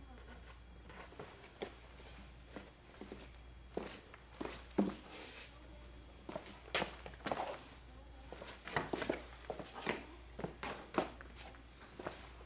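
Natural-fibre rope being pulled and wrapped around a person's upper arms: scattered short swishing and rubbing noises as the rope is drawn through and around the body, busier in the second half.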